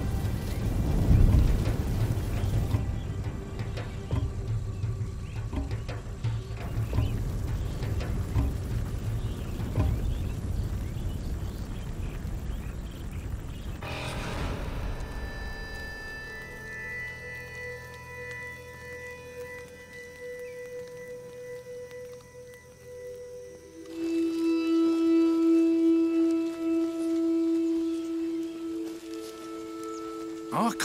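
A grass fire's low roar and crackle under background music, fading out about halfway through; the music then carries on alone with long held notes that swell louder near the end.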